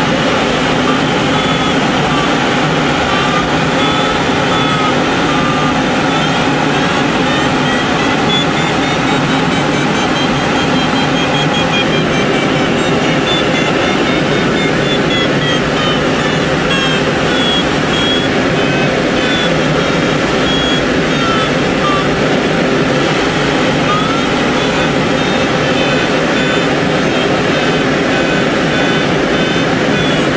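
Steady rush of airflow in a glider cockpit, with an audio variometer beeping throughout. The beeps slowly rise in pitch and then fall again over several seconds, following the glider's climb and sink.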